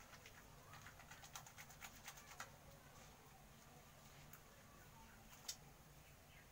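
Near silence, with faint, short, wet clicks of soap lather being squeezed and gathered between the hands: a cluster in the first half and a single sharper click near the end.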